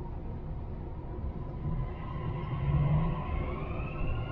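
Dubai Metro electric train pulling away from a station, heard from inside the carriage: a low rumble under a motor whine that starts rising in pitch about a second and a half in as the train accelerates.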